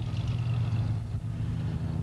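Steady low engine hum, like a car idling on the street, cutting in suddenly and holding unchanged.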